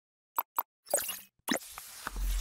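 Sound effects of an animated logo intro: two quick pops about a fifth of a second apart, then two longer swelling bursts about a second and a second and a half in.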